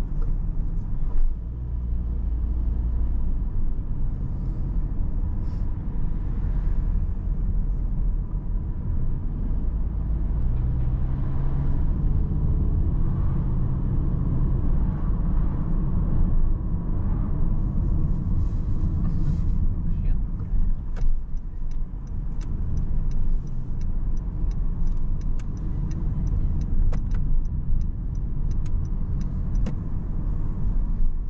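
Car cabin noise while driving: a steady low road and engine rumble, the engine note shifting as the car slows. From about two-thirds of the way in, a turn indicator ticks at an even rate.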